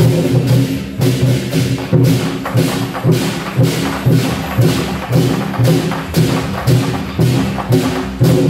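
Large Chinese barrel war drums beaten in a steady, driving rhythm, about two strong beats a second, with hand cymbals crashing along with the beats.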